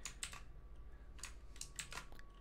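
Computer keyboard keys clicking as the Ctrl+Z undo shortcut is pressed several times in quick succession, then Shift+Ctrl+Z to redo, to back out of a modelling mistake. The clicks are faint and scattered, with a few near the start and a quick cluster near the end.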